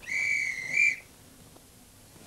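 A railway guard's whistle blown once: one loud, steady, high blast of about a second that lifts slightly at the end, the signal for the train to depart.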